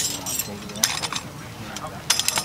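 Number five Bridger steel beaver trap and its chain clinking and jangling as it is handled, with clusters of sharp metallic clinks in the first half second and again about a second in.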